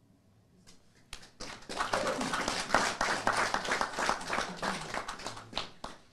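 Applause from a group of people clapping. It starts about a second in and stops just before the end.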